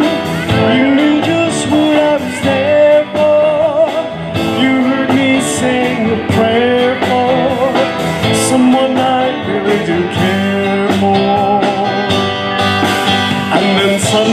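A live band playing: electric guitars and a drum kit with cymbal hits every few seconds, and a man singing lead.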